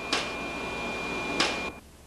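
A steady mechanical hum and hiss of a film printer running in a darkened lab, with a faint steady high tone and two sharp clicks about a second and a half apart. The sound cuts off abruptly near the end.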